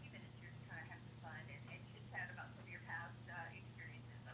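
Faint, thin telephone voice of the caller leaking from a mobile phone's earpiece held to the ear, over a low steady hum.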